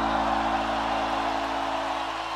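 The last strummed acoustic guitar chord of the song ringing out and slowly fading, while a large crowd cheers.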